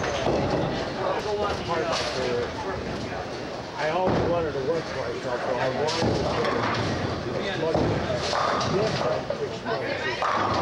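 Bowling alley noise: people talking among themselves, with sharp clatters of bowling pins and balls from the lanes cutting in now and then.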